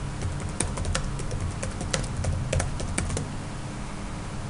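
Typing on a computer keyboard: a quick, irregular run of key clicks as a short command is entered.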